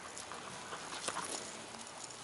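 Two dogs scuffling over a knotted rope toy on grass: a quick run of taps and rustles through the first second and a half, then softer rustling.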